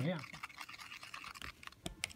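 Plastic stir stick in a plastic cup of liquid, giving light scattered clicks and scrapes with a sharper tap near the end.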